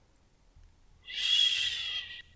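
A breathy exhale close to the microphone with a faint whistling tone, starting about halfway through and lasting a little over a second; the first half is near silence.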